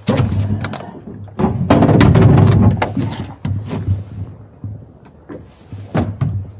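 Irregular knocks, thumps and rattles on a small boat's deck as a freshly caught black porgy is handled and picked up off the measuring ruler, busiest about one and a half to three seconds in.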